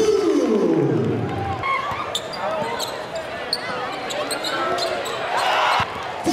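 Live basketball game sound in a gym: a ball bouncing on the hardwood and sneakers squeaking, over crowd voices that fall away in the first second.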